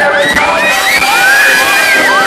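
Concert crowd cheering and screaming close by, many high-pitched screams overlapping and sliding up and down in pitch.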